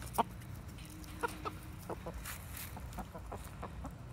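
Chickens clucking quietly, a few short separate calls, from a small flock of Rhode Island Red and silkie hens.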